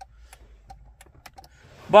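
Faint, irregular light clicks and taps, several a second, with a man's voice starting at the very end.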